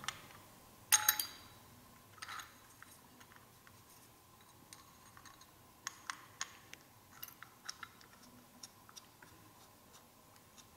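Light metallic clicks and taps of new brake pads and the pad pin being fitted by hand into a motorcycle's rear brake caliper. There is one sharper click about a second in, then scattered small ticks through the second half.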